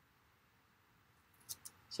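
Near silence, then two quick, faint snips of scissors cutting through cardstock about one and a half seconds in.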